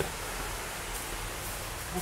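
Steady, even background hiss of room tone with no distinct events.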